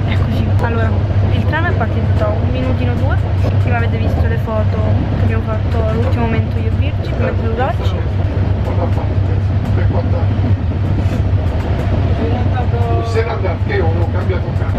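Steady low rumble of a passenger train running, heard from inside the carriage, with voices talking over it.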